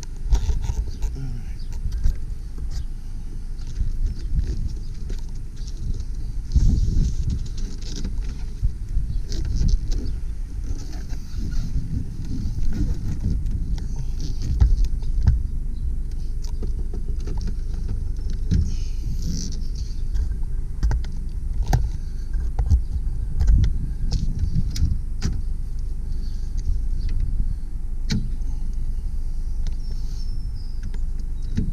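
Wind rumbling on the microphone, with irregular clicks and knocks as the Honda del Sol's removable roof panel is handled and set into its rack in the trunk.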